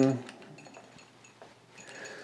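A few faint, small clicks of metal parts as a ball head is twisted tight onto a star tracker's mounting-plate screw.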